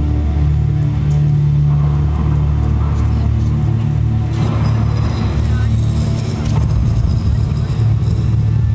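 Deep, steady droning soundtrack of a light-projection show played over outdoor loudspeakers. A rushing noise swells in about four seconds in and cuts off about two seconds later.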